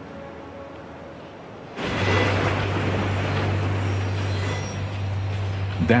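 A loud, even rushing noise with a steady low hum beneath it, starting suddenly about two seconds in after a quiet stretch.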